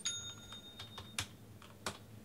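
A handful of sharp clicks and taps at irregular intervals. The first is followed by a short, high metallic ring.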